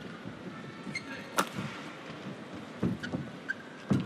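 Badminton rally: racket strikes on the shuttlecock, with the sharpest crack about a second and a half in and duller hits near the end. Short shoe squeaks on the court sound over a steady arena crowd murmur.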